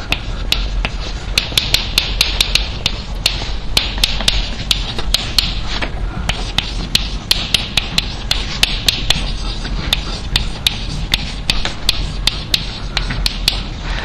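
Chalk writing on a blackboard: a quick, irregular run of sharp taps and clicks, several a second, as each stroke of the letters hits the board, over a steady low room hum.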